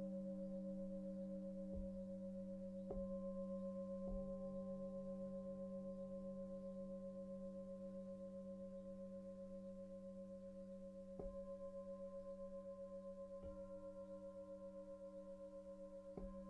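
Singing bowls ringing in long, overlapping tones that waver. They are struck softly five times, and each ring sustains and slowly fades between strikes.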